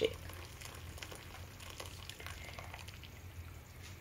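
Boiling water pouring into a cooking pot and bubbling in it: a faint, steady hiss with small crackles.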